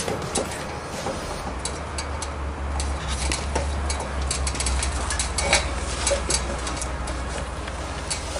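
Light clicks and knocks of boots and hands on the rungs of an aluminium ladder as a man climbs down it, over a steady low rumble.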